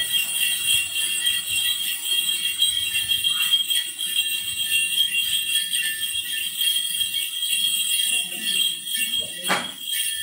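Cluster of small metal ritual bells, the chùm xóc nhạc of Then ceremonies, shaken in a continuous, steady jingle, with a brief louder sound near the end.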